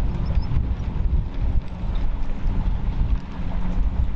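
Outboard motor running steadily with a low rumble, heard across the water, with wind buffeting the microphone.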